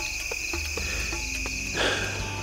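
Insects chirring in a steady, unbroken high-pitched drone, with soft background music underneath.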